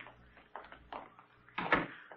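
Radio-drama sound effect of a door being opened: a few faint clicks, then a louder sharp knock near the end.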